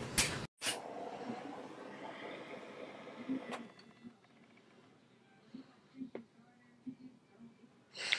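Lighter clicking and igniting, then its flame hissing softly for about three seconds as it lights an alcohol lamp, fading out. A few faint small taps follow.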